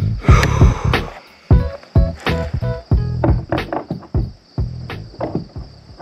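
Background music with a strong, punchy beat of deep drum hits and short melodic notes.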